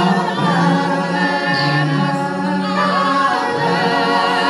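A small gospel vocal ensemble of men and women singing a cappella in harmony, holding long notes with a wavering vibrato.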